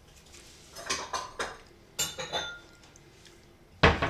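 Metal spoon knocking and scraping against a plastic food tub while food is scooped out: a series of short clicks and clinks, the loudest knock near the end.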